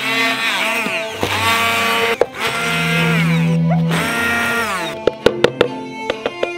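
A small electric grinder run in short pulses on dried herbs, its motor whine falling in pitch each time, with a few sharp clicks near the end. String music plays underneath.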